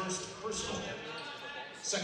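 Background voices of players and spectators, heard faintly and echoing in a large gymnasium.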